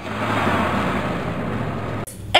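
Heavy truck engine sound effect, fading in and then running steadily with a low hum under a rushing noise, cut off sharply at the end.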